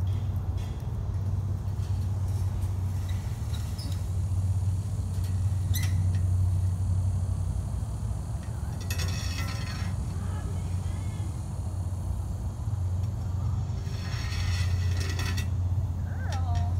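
A steady low hum throughout, with faint voices about nine seconds in and again near the end.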